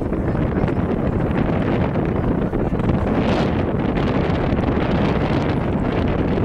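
Wind blowing across an outdoor camera microphone: a steady rumbling noise.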